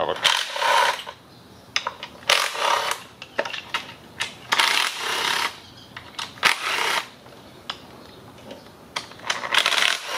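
Cordless impact driver with a reverse Torx socket spinning out valve cover bolts, in about five short bursts of a second or less, with small clicks of the socket and bolts between them.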